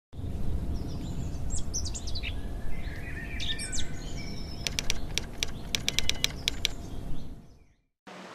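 Birds chirping in short calls that slide in pitch, over a steady low rumble, followed by a quick run of about a dozen sharp clicks; it all fades out just before the end.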